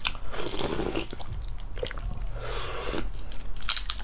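Close-miked chewing of a boiled fertilized egg, with wet mouth sounds. Near the end come a few sharp crackling clicks as the eggshell is cracked and picked off with the fingers.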